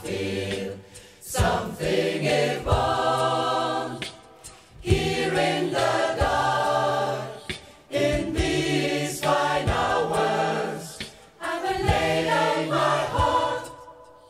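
Mixed gospel choir singing a cappella in full harmony, a slow ballad sung in phrases with brief breaths between them.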